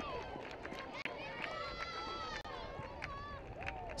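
Faint, excited voices of players and spectators on the pitch, several high voices calling and shouting over one another as a goal is celebrated.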